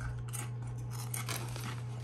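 Crunching of a ridged potato chip being bitten and chewed: a run of short, crisp crackles over a low steady hum.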